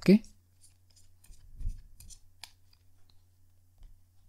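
A tarot deck being shuffled by hand: scattered faint clicks and snaps of the cards, with a few soft low thuds.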